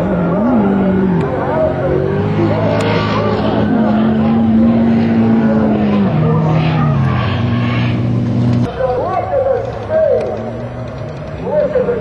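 Drift car engine held at high revs with tyre noise as the car slides sideways. The engine note steps down about six seconds in and cuts off near nine seconds.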